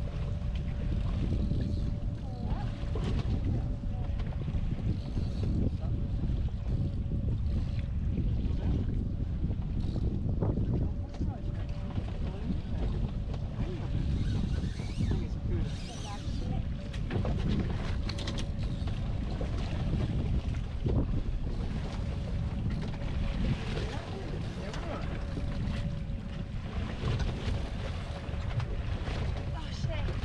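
Wind buffeting the microphone on a small boat at sea, with water against the hull, in a steady rumble, and a faint steady hum throughout.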